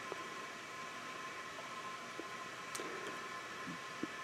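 Low steady room hiss with a faint high tone, and a few faint small clicks as a bicycle brake lever's barrel adjuster is turned by hand.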